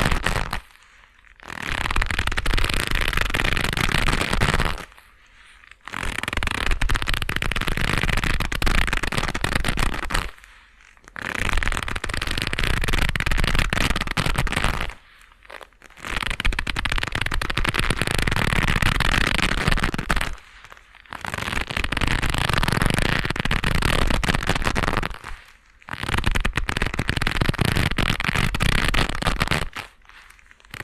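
Leather gloves rubbed and worked against each other right at a binaural microphone, with a dense crackling rustle. It comes in bouts of four to five seconds, each broken off by a short pause, about six times.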